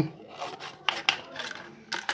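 Scissors cutting through a thin plastic soda bottle, a few scattered snips and crackles of the plastic.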